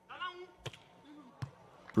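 Two sharp slaps of hands striking a beach volleyball, a little under a second apart, with faint player calls between them.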